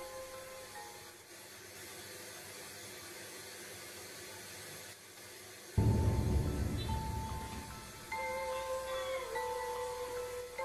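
A faint steady hiss, then about six seconds in a mobile phone suddenly starts ringing loudly, with a low buzzing vibration under its ringtone tones.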